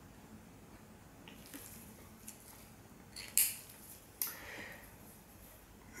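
Fountain pens handled on a paper pad: faint pen-on-paper sounds and a few soft clicks and scrapes, the two loudest about three and a half and four and a quarter seconds in.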